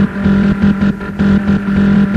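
Electronic hard dance music from a DJ mix: a loud pulsing bass note repeating in a steady, driving rhythm.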